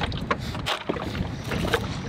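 Plastic cups and a plastic snack jar being shifted around inside a plastic cooler: a few light knocks and rustles over a steady low rumble.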